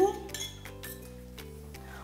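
Soft background music, with a few light clinks of a spoon against a saucepan and a bowl.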